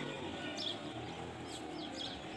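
Small birds chirping: a few short, high, falling chirps about half a second in and again near the end.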